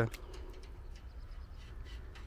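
Quiet outdoor background: a steady low rumble, likely wind on the microphone, with a few faint small clicks.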